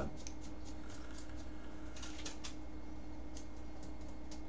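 A quiet drag on a vape pen: a few faint clicks and crackles over a steady low hum.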